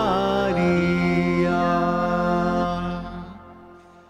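Devotional hymn, a singing voice over sustained accompaniment, ending on a long held chord that fades away about three seconds in.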